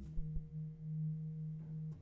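Bass clarinet and marimba playing soft contemporary chamber music: a steady, nearly pure low tone, with a mallet strike on the marimba at the start and another near the end.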